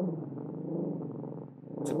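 A small dog growling: one long, low growl that eases off a little and stops near the end, a warning growl at a person it has noticed.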